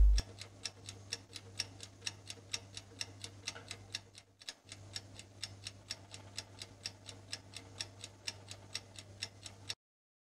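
Clock-ticking sound effect: a fast, even tick-tock over a faint low hum, stopping just before the end.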